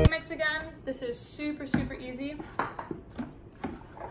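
Kitchenware clinking and knocking on a counter a few times, with short stretches of unworded voice sounds.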